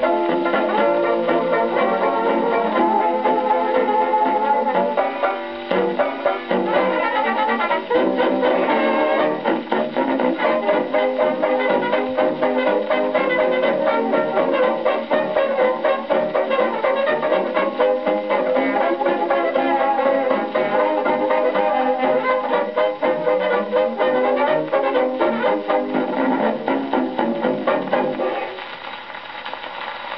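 Instrumental novelty dance-band music from a 78 rpm Brunswick record played acoustically through a large-horn gramophone, with a thin, treble-less sound. The tune ends about a second and a half before the end, and the level drops.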